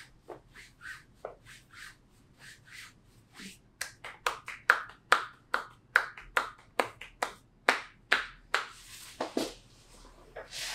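Rhythmic percussive massage strikes of hands on a client's leg, making sharp clapping pops. They are soft and about two a second at first, then louder and quicker, about three a second, from roughly four seconds in.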